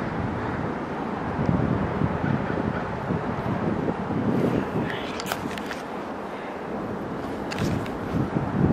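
Steady outdoor background noise, a mix of wind and distant vehicles, with a few clicks from the camera being handled about five seconds in and again near the end.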